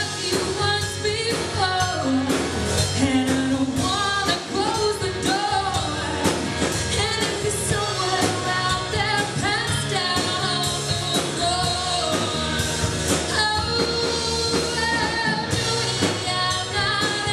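Live rock band playing: a woman sings lead over electric guitar, electric bass and a Tama drum kit.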